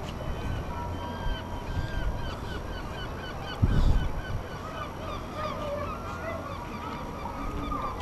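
Gulls calling: many short yelping calls in quick, overlapping series. A sudden low thump comes about three and a half seconds in.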